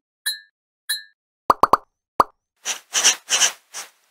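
Cartoon sound effects for an animated channel logo: two short high pings, then a quick run of four sharp pops, then four airy swishing bursts near the end.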